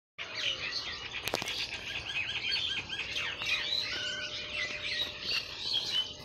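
Dusk chorus of many birds chirping and twittering at once, a dense tangle of overlapping high notes, with one sharp click about a second in.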